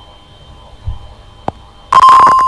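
Quiet room tone, then a single click about one and a half seconds in. Right at the end, a sampled xylophone note from the app's first key starts, a bright ringing tone that begins suddenly and decays slowly.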